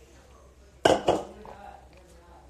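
Two sharp knocks about a quarter second apart, with a brief ring after them: a drink can set down hard on a granite countertop.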